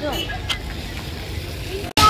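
Outdoor urban background: a steady low rumble like distant traffic under faint voices, with a brief voice right at the start and a short click about half a second in.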